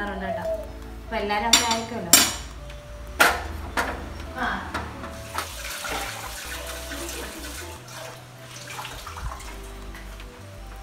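A few sharp clinks and knocks of steel kitchenware in the first four seconds, then a tap running water into a stainless-steel sink while something is rinsed.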